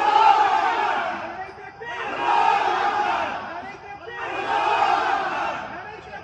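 Many voices chanting "Allahu Akbar" together, in three long swells that each rise and fade, the voices blending into one sound.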